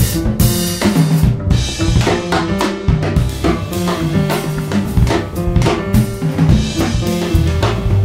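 Studio jazz quartet recording with piano, double bass, drum kit and hand percussion. The drum kit plays busy, steady strikes over repeated low and middle pitched notes, with the drums to the fore.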